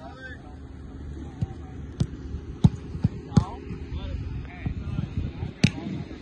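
A series of sharp thumps of American footballs being kicked, about six spread over a few seconds, the loudest two coming near the middle and near the end.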